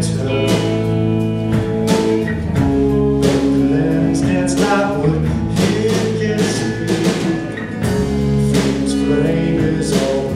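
Live band playing a song with a steady beat: strummed acoustic guitar, electric guitars and a drum kit with regular cymbal and drum hits.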